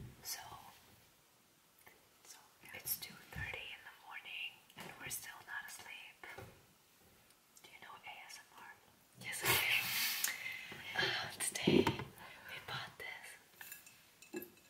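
Whispered speech, louder for a few seconds from about nine seconds in.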